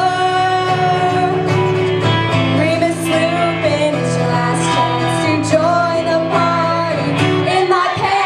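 Two acoustic guitars strummed under a woman singing a melody with long held notes.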